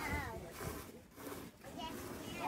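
Cow being hand-milked into a steel bucket: squirts of milk hissing into foam, broken by brief pauses. A high voice trails off at the start.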